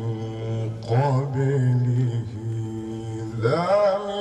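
A man reciting the Qur'an in melodic chanted style. He holds long low notes with a brief ornamented turn about a second in, then glides up to a higher held note near the end.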